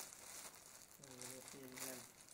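Clear plastic bags holding small toy figures crinkling as they are handled and shaken, with a crackle that is strongest at the start and again near the end.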